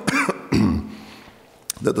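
A man coughs and clears his throat in the first second. His voice is hoarse and gravelly. A brief click follows just before he starts speaking again near the end.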